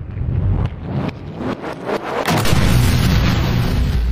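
Fireworks by Pirotecnia Alpujarreña opening a show: rapid bangs and crackles of bursting shells over a continuous low rumble, getting denser and louder about two seconds in.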